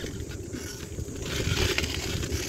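Bicycle rolling along a rough concrete path: a steady rumble of tyres with wind buffeting the bike-mounted microphone and a few light rattles.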